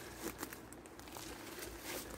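Faint rustling and crackling of dry leaf litter and undergrowth being disturbed, with a few small clicks, a little louder about a third of a second in and again near the end.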